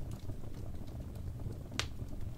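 Wood fire burning in a fireplace: a steady low rumble of flames with scattered small crackles and one sharp pop near the end.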